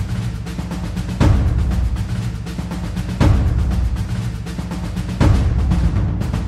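Dramatic film score music: a low sustained drone with a deep, timpani-like drum hit about every two seconds, three hits in all.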